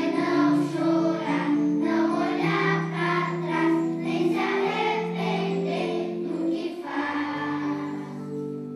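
Children's choir singing with electronic keyboard accompaniment. Near the end the voices drop away, leaving the keyboard's held notes.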